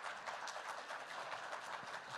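Audience applause, a steady patter of many hands clapping, fairly faint.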